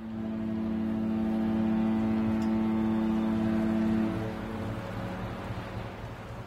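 A long, steady horn blast over a low rumble. It sounds for about four seconds, then drops away and trails off.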